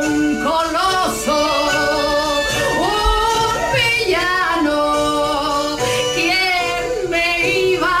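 A woman singing a slow song with long held notes that slide and waver between pitches, over quiet musical accompaniment.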